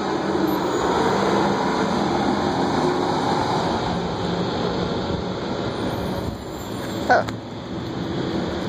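Fire ladder truck's engine running as the truck drives away, its sound fading gradually over several seconds amid street traffic noise.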